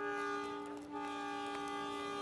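Background music: a steady held chord or drone of several sustained tones, with one note shifting slightly about a second in.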